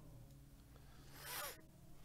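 A single brief ripping, zip-like sound about a second in, lasting under half a second, over a faint steady hum.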